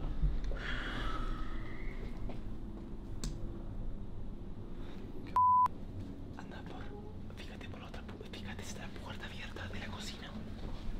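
Quiet, whispered talk, cut once about five and a half seconds in by a short, steady censor beep that blanks out a swear word.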